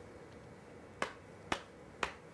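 Sharp clicks at an even half-second spacing: two in the second half and a third right at the end.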